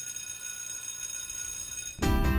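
Electric school bell ringing steadily, high and metallic, cutting off at the end.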